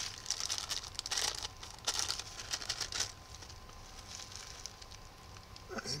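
Clear plastic parts bag crinkling as hands handle it, in several short bursts over the first three seconds, then only faint rustling.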